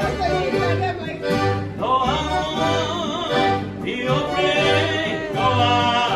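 Mariachi-style violin and strummed acoustic guitar playing with a man singing, over a steady beat of about two low strums a second.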